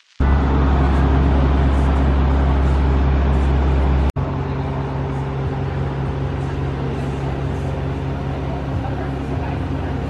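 Café room tone with a loud, steady low hum. About four seconds in it cuts to quieter outdoor ambience with a steady background hum.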